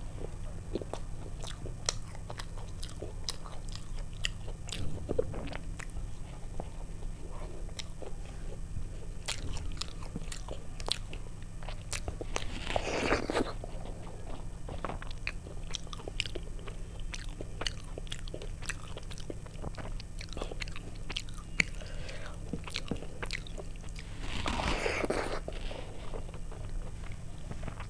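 Close-miked mouth sounds of eating soft khichuri and fried fritters by hand: a steady run of wet clicks and smacks of chewing. Twice, near the middle and near the end, a louder noisy sound lasting about a second stands out.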